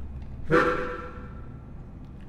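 A single musical chord sounds about half a second in and fades away over about a second.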